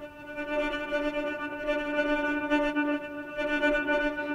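Native Instruments Straylight granular synthesizer playing a single held note as an ambient pad built from a sampled recording, with its built-in delay switched on. One steady pitch that wavers slightly in level.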